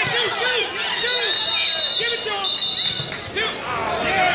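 Scoreboard buzzer marking the end of the period: a high steady tone starts about a second in and lasts about two seconds, with a brief break, over spectators and coaches shouting.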